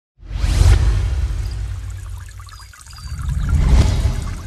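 Logo-intro sound effects: a deep, rumbling whoosh starts suddenly and fades away over about two seconds. A second deep whoosh then swells up to a peak near the end.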